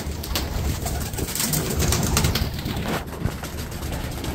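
Pigeons cooing steadily, with some rustling.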